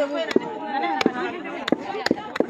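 Wooden pestles pounding in a mortar: sharp, irregular knocks, about five in two seconds, with people's voices over them.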